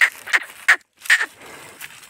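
Hallikar bull pawing the dry dirt with its hooves: a run of short, rough scraping strokes, about three a second at first, then a short pause and two more.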